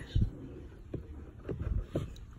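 Handling sounds: a few low thumps and light knocks as a plant is worked into place in a water-filled tank, with the hands close to the microphone.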